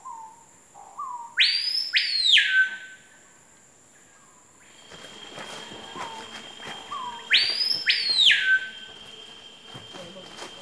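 A bird calling in rainforest: a loud whistled phrase given twice, about six seconds apart, each of soft short notes followed by two sharply rising whistles, the last falling away. From about halfway through, a steady high tone runs underneath.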